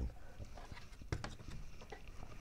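Faint handling noise from a car body control module with a plastic housing being set down on a cutting mat: a few light clicks and taps, the clearest knock about a second in.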